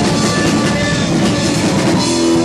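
A rock band playing live and loud, with electric guitars and drums merging into a dense, unbroken wall of sound.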